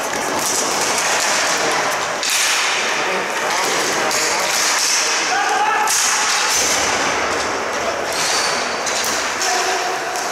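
Ball hockey play in an indoor arena: sticks and the ball clacking and thudding on the concrete floor, with players' voices calling out.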